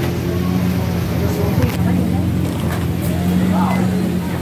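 A vehicle engine idling: a steady low drone of constant pitch, with scattered voices of passersby near the end.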